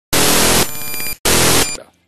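Two loud bursts of harsh static-like digital noise with scraps of tones in them. The first runs about a second and cuts off abruptly, and a shorter one follows straight after. This is glitched, corrupted audio in the video file.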